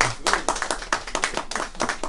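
A small group of people applauding, with scattered, uneven hand claps that thin out a little after the first second.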